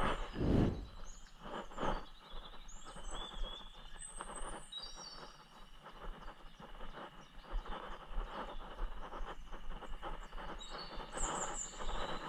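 Birds chirping in a few short calls over a steady outdoor background noise, with a couple of dull thumps near the start.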